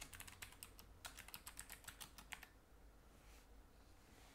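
Faint typing on a computer keyboard, a quick run of keystrokes that stops about two and a half seconds in.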